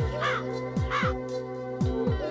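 Crow cawing twice, about a third of a second and a second in, over title music with deep booming beats that drop in pitch.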